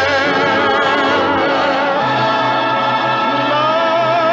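Orchestral closing film music with singing voices, held notes wavering with vibrato; a lower sustained note comes in about halfway through.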